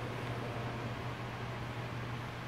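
Steady background noise of a large indoor hall: an even hiss over a constant low hum.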